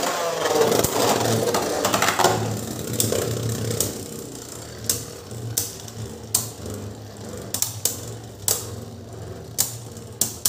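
Two Beyblade Burst spinning tops whirring and grinding on a clear plastic stadium floor just after launch, loudest in the first three seconds with a falling pitch. Then the whir settles lower and sharp clacks come every second or so as the tops strike each other.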